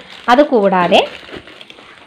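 A few spoken words, then faint crinkling and rustling of foam packaging wrap as it is handled in the second half.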